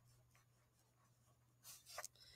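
Near silence with a faint steady low hum; near the end, faint pen scratching on paper as a few words are written.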